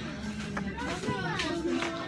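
Indistinct chatter of several voices in the background, with no clear words.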